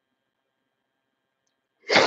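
A woman crying: quiet, then near the end one short, sharp, noisy sobbing breath.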